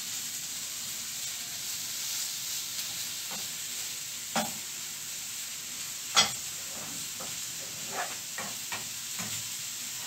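Sliced sausages, onions and bell peppers sizzling steadily in oil in a non-stick frying pan on low heat while being stirred with a plastic spatula. The spatula knocks against the pan a few times, loudest about six seconds in, with quicker light taps near the end.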